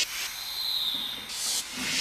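A hissing whoosh sound effect over a logo transition, with a whistling tone in it for about a second and a brief louder rush near the end.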